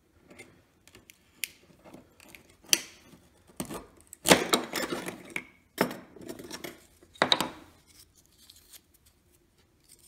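Hands working on small wooden player-piano pouch blocks at a workbench, pulling out an old leather pouch: scattered clicks and light knocks of wood on the bench, with a scraping, rustling stretch of about a second near the middle.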